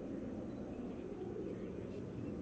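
Distant jet aircraft flying overhead: a steady, even low rumble.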